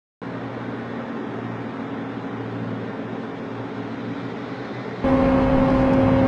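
Engines running with a steady hum. About five seconds in, the sound cuts abruptly to a louder engine drone.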